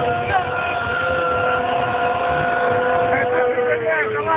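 A crowd of voices holding one long, steady 'oooh' on a single pitch that drops away near the end, egging on someone drinking in one go.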